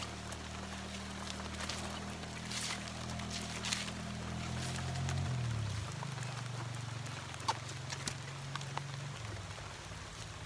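Abaca leaf-sheath strips peeled and pulled apart by hand, giving a few short ripping rasps and small snaps of fibre, over a steady low machine-like hum that changes pitch about halfway through.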